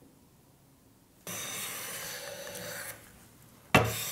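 Hand plane with a cambered blade taking a shaving along a guitar fretboard in one steady stroke of under two seconds, shaping its compound radius. Near the end a sharp knock, and a second stroke begins.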